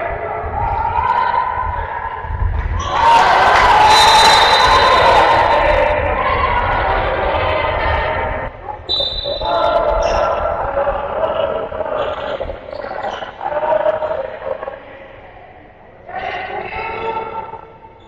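Handball game in a sports hall: players and spectators shouting while a ball bounces on the court. About three seconds in, the crowd breaks into louder cheering and shouting that lasts a few seconds.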